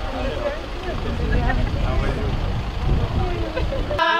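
Outdoor chatter of several people talking at once, faint and overlapping, over a steady low rumble.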